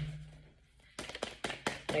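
A deck of cards being shuffled by hand: after a brief silence, a quick, irregular run of light taps and clicks starts about a second in.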